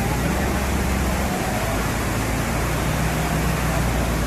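Steady rush of fast, shallow water pouring over a rocky bed.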